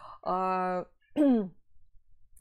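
A woman's voice: a drawn-out hesitation sound held at one pitch for about half a second, then a short syllable falling in pitch.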